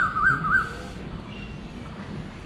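A bird calling: a run of clear whistled notes, each rising and falling, about four a second, ending about a second in.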